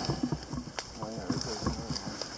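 Faint, low talking, with a few light knocks and rustles.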